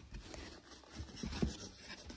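Faint handling sounds of foam packing inserts in a cardboard box: soft rustling with a few soft low bumps about a second in.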